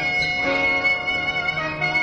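A live band jamming, with a long held lead note over guitar, bass and drums, heard on a lo-fi cassette recording.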